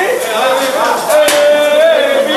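People's voices at a dinner table, one of them held as a long drawn-out call through the second half, with a couple of sharp clicks.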